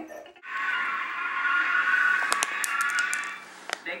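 Television sound playing in the room: a bright, steady musical tone held for about three seconds, with a quick run of sharp clicks near its end.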